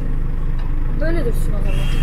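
A car engine idling steadily, a low even hum, with a short laugh about a second in.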